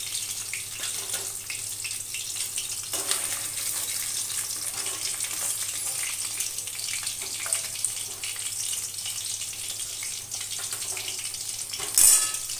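Fish pieces sizzling steadily as they fry in hot oil in a steel kadai, with occasional light clicks of a metal spatula against the pan as the pieces are turned and lifted out.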